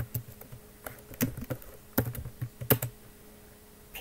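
Computer keyboard typing: scattered, irregular keystrokes, quieter after about three seconds in, picked up through a laptop's built-in microphone.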